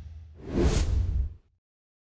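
Whoosh sound effect of an animated logo sting, a rising rush of hiss over a low rumble, about a second long, cutting off abruptly about a second and a half in.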